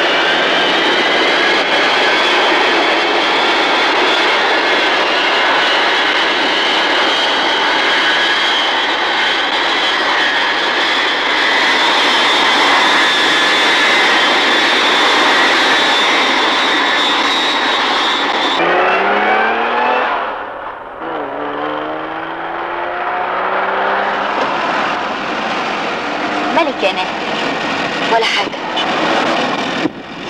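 Jet airliner engines running with a loud, steady roar and high whine, as for a take-off. About two-thirds of the way through this cuts off abruptly to a quieter passage with a few rising tones.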